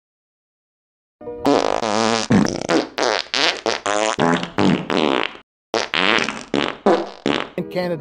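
Heavily distorted, buzzy vocal sounds in short choppy bursts, starting about a second in after silence, with a brief break near the middle.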